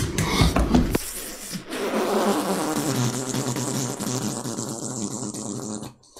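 Fast, flapping footfalls, like bare feet running over a hard floor, coming towards the phone. Low thumps mark the first second.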